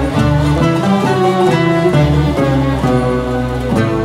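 Turkish classical instrumental ensemble playing a peşrev in makam Bayati, with bowed and plucked strings moving together over a sustained bass line that changes note about once a second.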